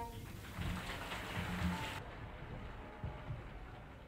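Faint steady hiss with some low murmuring underneath: the background noise of an old recording.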